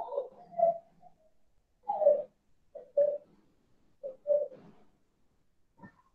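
A bird cooing: three short phrases about a second apart, faint behind a video-call microphone, with a brief click near the end.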